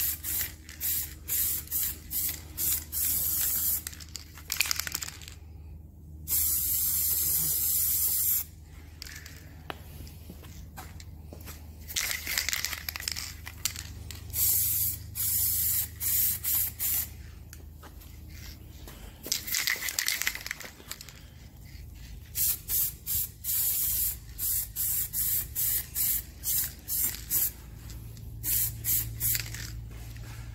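Aerosol can of car paint hissing as a coat is sprayed onto a car wing, in many short bursts with a few longer passes of about two seconds. Near the end the bursts come quickly, about two a second.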